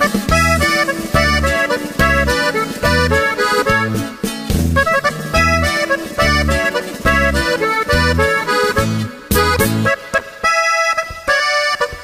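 Instrumental break in a corrido, with an accordion playing quick runs over a steady, even bass beat. The bass drops out briefly near the end while the accordion carries on.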